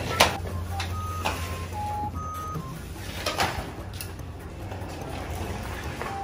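Toy stroller's wheels rolling over a tiled floor with a steady low rumble, the frame clicking and rattling a few times.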